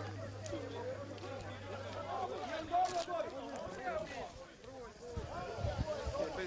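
People's voices talking, with no words clear enough to transcribe. A steady low hum fades out about two seconds in, and a short sharp click comes about three seconds in.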